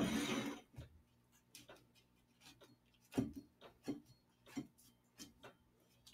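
Paper liner crinkling as it is peeled off a steamed cake, in a short burst at the start. It is followed by a scattered series of soft taps and knocks from handling it on a wooden table.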